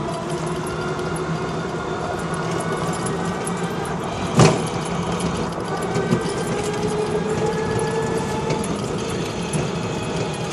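Electric tricycle riding along a street: steady road and rattle noise with a faint motor whine that drifts slowly in pitch as the speed changes. One sharp knock about four and a half seconds in, and a small click a couple of seconds later.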